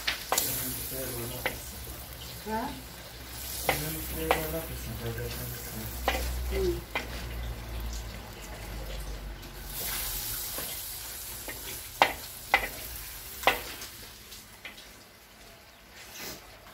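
Diced sheep meat frying in tail fat in a wide metal pan, sizzling steadily while it is stirred with a wooden spoon. The spoon knocks and scrapes against the pan now and then, a few sharp clacks, and the sizzle fades toward the end.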